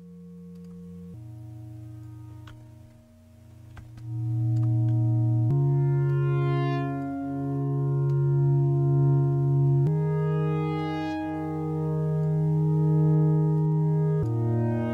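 Bitwig Poly Grid synth patch playing slow, sustained chords built from stacked harmonics, its notes chosen by a Markov-chain sequencer in D-sharp minor; the chord changes roughly every four seconds. It starts soft and grows louder about four seconds in, and its upper harmonics swell in and fade as a random LFO varies the level of each one.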